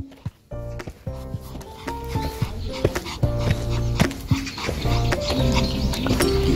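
Background music with a steady beat, and a Pomeranian barking over it.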